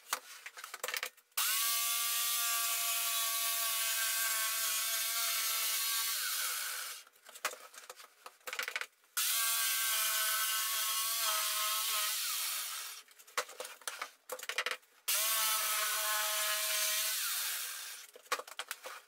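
Jigsaw running and cutting through OSB board in three runs of a few seconds each, the motor winding down at the end of each run. Between the runs come short knocks and rattles as the board and jig are shifted.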